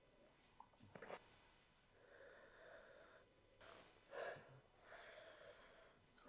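Faint sniffing as whiskey is nosed from a glass: a few drawn-in breaths of about a second each, mostly in the second half, over near-silent room tone.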